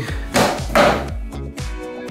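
Background music, over which a thrown cardboard box hits a tile floor and skids, making two short noisy impacts under a second apart.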